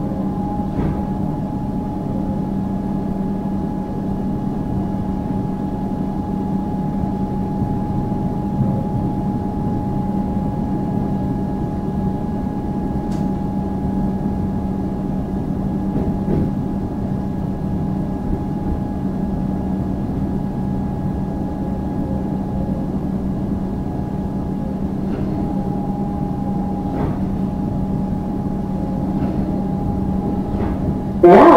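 Interior of an Alstom Comeng electric suburban train running along the line: a steady rumble with constant electrical hum tones, and a few faint clicks along the way.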